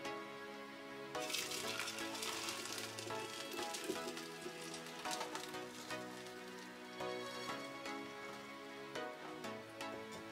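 Background music with held notes. Under it, a spell of splashing from about a second in to about six seconds in: hot boiled berries and water being poured from a saucepan through a mesh strainer into a glass French press.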